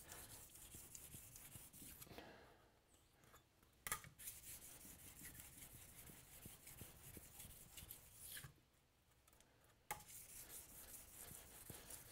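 Faint rubbing of a steel scraper blade drawn back and forth on its edge over a sharpening stone, taking off old burrs before the edge is re-sharpened. A couple of light clicks, and the sound drops out to silence twice.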